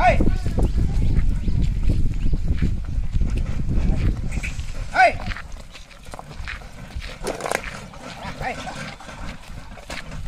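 Loaded bullock cart drawn by a pair of oxen, with a heavy low rumble that eases after about four and a half seconds. A dog barks once about five seconds in, and a short call comes right at the start.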